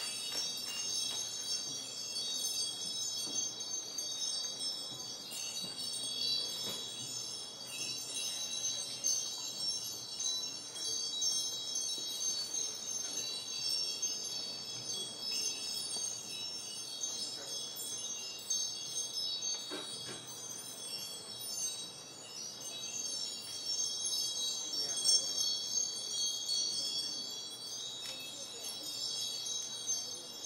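Continuous high chiming: many bell-like tones ringing together in a steady, dense shimmer.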